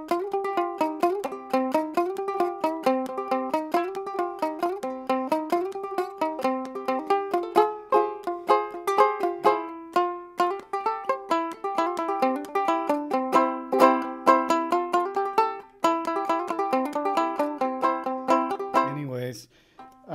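Banjo ukulele played clawhammer style: a quick, even run of plucked notes and downward brush strokes. It breaks off briefly about three-quarters of the way through, then stops just before the end.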